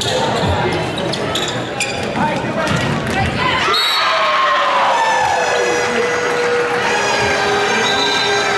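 Volleyball rally in a reverberant gym: the ball is struck several times with sharp smacks. Once it drops to the floor, voices rise in a long shout that falls in pitch.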